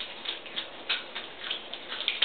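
Eurasian otter chewing a fish, with irregular wet smacking and crunching clicks, several a second.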